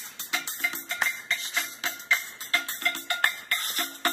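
Music with a fast, clicky percussive beat playing through bare oval speaker drivers from a small DIY amplifier board, the sign that the newly built amplifier works.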